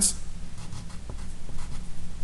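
Pen scratching on paper in short strokes, writing a letter and a small arrow.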